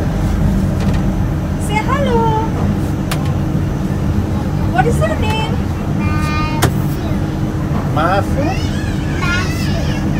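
Steady low rumble of a stationary vehicle's engine idling, with a small child's high voice calling out and vocalizing several times over it.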